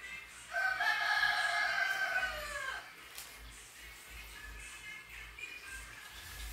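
A rooster crowing once: a single long call that starts about half a second in, holds for about two seconds and drops in pitch at the end.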